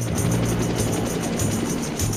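Helicopter noise, a steady roar, under trailer music with a low bass line.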